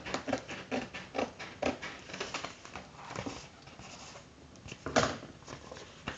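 Handling noises of a paper craft and a small candle being fitted into it: a run of light irregular taps, clicks and rustles, with one louder thump about five seconds in.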